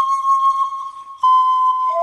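Solo panpipe playing slow held notes: a long note fades about a second in, a new note starts right after, and the melody drops to a lower note near the end.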